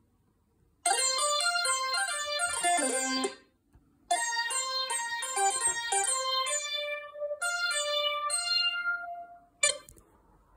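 Monophonic GarageBand software synthesizer playing short, stepping high notes triggered by touches on a TouchMe MIDI controller. The notes are transposed up two octaves (+24 semitones) through MidiFlow. There are two phrases with a brief pause about three seconds in, and the later notes are held longer.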